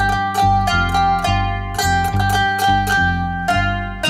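Qanun, the plucked Arabic zither, playing a quick run of ringing plucked notes in maqam bayati on G: a dolab, the short instrumental prelude that sets up the scale. An upright bass plucks low notes underneath at about two a second.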